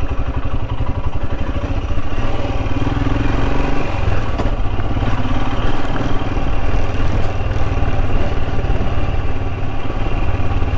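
Royal Enfield Himalayan's single-cylinder engine running steadily as the motorcycle is ridden, a fast low thudding beat, with a slight change in its note about four seconds in.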